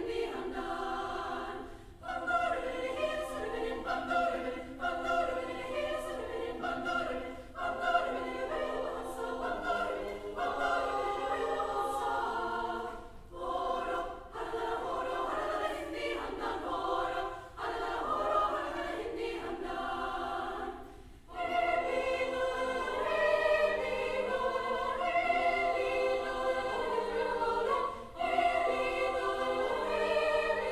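A choir singing in sustained phrases, with brief breaks between them.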